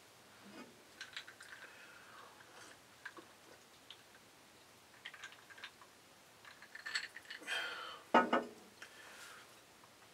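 A man quietly sipping an iced fruit-punch drink from a glass, with scattered faint clicks of ice and mouth sounds. A few louder mouth and breath sounds follow near the end.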